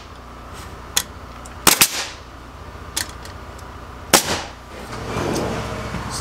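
Cordless nail gun firing nails into barnwood boards: about five sharp shots spread a second or so apart, two of them close together, over a steady low hum.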